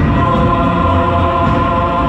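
Live orchestra with choir, the voices holding long sustained notes over a dense, low orchestral accompaniment.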